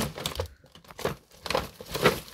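A ferret burrowing through crinkly plastic wrappers and a cellophane bag, the plastic crackling in irregular bursts with a short lull near the middle.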